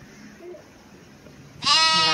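Faint outdoor background, then near the end a loud, drawn-out voice call close to the microphone, one long vowel held at a steady pitch.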